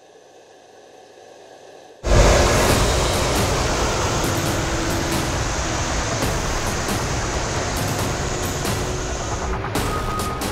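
A faint hum, then about two seconds in a loud, steady rush of truck and heavy-machinery noise starts suddenly, with music underneath.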